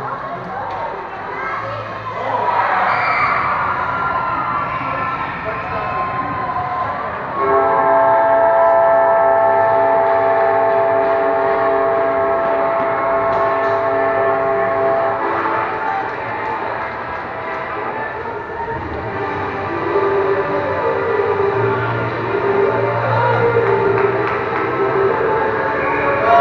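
Arena horn sounding a steady, multi-toned note for about eight seconds, starting suddenly a few seconds in, over spectators' voices.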